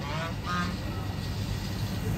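Steady hum of road traffic on a city street, with a brief high-pitched sound in the first half second.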